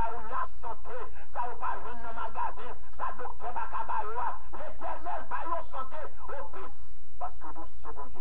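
Indistinct voices talking and praying, with a steady low hum underneath.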